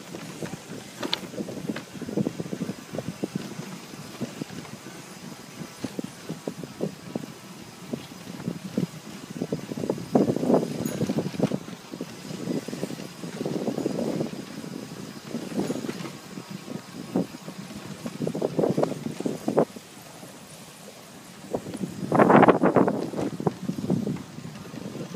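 Bicycle taxi rattling and clattering as it rolls along the street, with louder bursts of rattle every few seconds, the loudest near the end.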